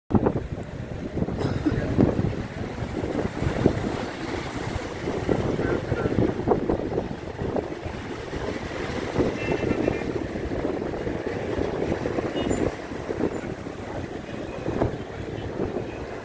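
Wind buffeting the microphone in irregular gusts, over small waves washing onto shoreline rocks.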